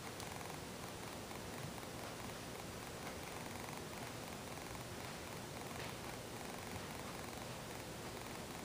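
Faint steady hiss of room tone with no distinct sound events.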